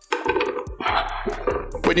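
Chopped mushrooms and red onion scraped off a wooden chopping board into a stainless-steel saucepan, with knocks of the board and a wooden spoon against the pan. A short hiss about a second in.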